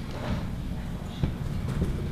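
Irregular soft knocks and thumps with paper handling on a table close to the microphones.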